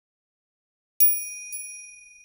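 A single high, metallic bell chime struck about a second in, with a faint second tap half a second later, ringing on and slowly fading.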